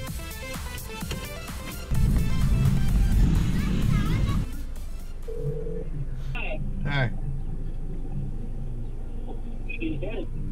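Background electronic music with a steady beat, louder for a couple of seconds and then cutting off about halfway through. After it, the Honda Civic's engine idles with a low steady hum, heard from inside the cabin, with a brief tone and two short falling chirps.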